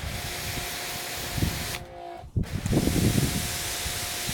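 A jet of water sprayed onto a waxed, painted car hood makes a steady hiss that breaks off briefly about halfway and then starts again. The spray is rinsing the test panel to see whether each wax coating still sheds water.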